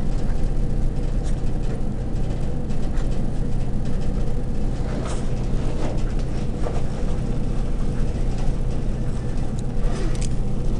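A steady low hum with a constant hiss, under the light scratching and tapping of a pen writing on paper.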